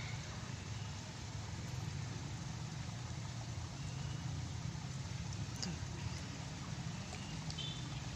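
Steady low background rumble under a faint hiss, with a few faint, short high chirps.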